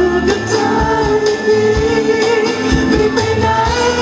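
Male singer singing live into a handheld microphone, holding long notes that bend slowly in pitch, over amplified backing music with a steady drum beat.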